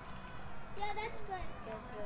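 Children's voices talking softly.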